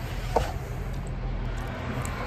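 Steady low rumble of outdoor background noise, with one brief vocal sound from the eater about a third of a second in.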